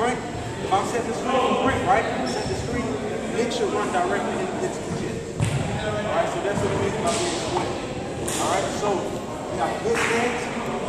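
Several people talking indistinctly in a gymnasium, with a few sharp knocks, the clearest about five and a half seconds in and again near eight seconds.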